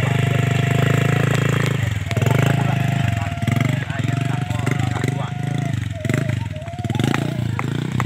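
Motorcycle engine running loud and close, loaded with a large rock. It comes in suddenly just before the start, runs steadily for about two seconds, then rises and falls in pitch as it is throttled.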